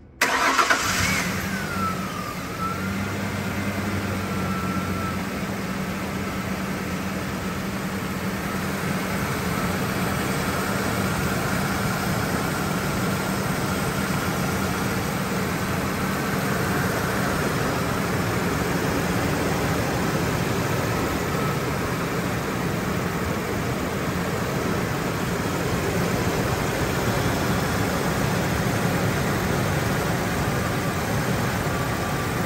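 A 2001 Mazda B3000's 3.0-litre V6 starts, catching at once, then settles into a steady idle. A whine drops in pitch over the first two seconds as the revs come down, then holds.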